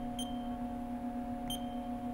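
Two short, high keypad beeps from a Haas CNC control panel as values are keyed into the probing cycle, one just after the start and one about one and a half seconds in, over a steady low hum.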